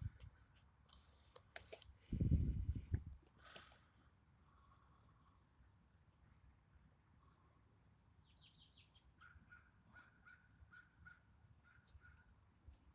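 Birds calling: a quick run of high chirps about eight seconds in, then a string of short repeated calls to the end. A brief, loud low thump comes about two seconds in.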